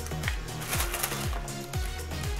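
Background music with a steady beat: a deep bass drum that falls in pitch about twice a second, under light ticking percussion.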